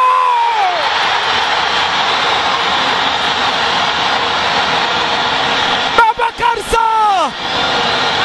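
A television football commentator's long held goal call tails off with a falling pitch, then a steady roar of crowd cheering follows a goal. About six seconds in he shouts again with another long call that drops in pitch.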